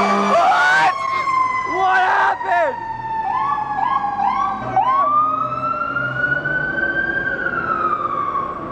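Fire engine siren sounding as the truck drives past: a long, slowly falling wail, then a few short rising whoops, then a long wail that rises and falls again.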